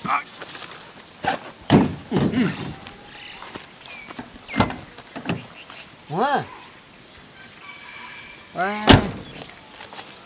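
Pickup truck door and bodywork being handled: scattered clicks and knocks, a couple of short squeals, and a loud sharp knock near nine seconds in from the driver's door.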